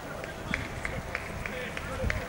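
Footsteps: a quick run of light, sharp steps, about three a second, starting about half a second in.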